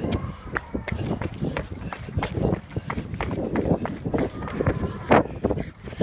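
Someone running on stone steps: quick, irregular footfalls with knocks and rubbing of the handheld phone as it swings.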